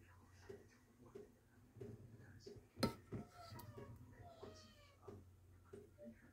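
A sharp click about three seconds in, then two faint pitched calls from a pet, each falling in pitch.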